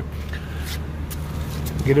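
Steady low mechanical hum with a few faint clicks; a word of speech begins right at the end.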